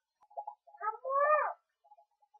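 Short animal-like calls: a few brief chirps, then one longer call of about half a second that rises and falls in pitch.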